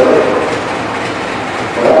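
GE U18C (CC 201) diesel-electric locomotive standing and idling, a steady engine noise with no clear rhythm. A singing voice comes back in near the end.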